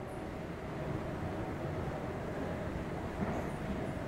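Steady low background rumble with a faint hum: the ambient noise of a large indoor lobby.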